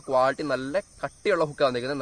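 A man talking, in steady speech with short pauses.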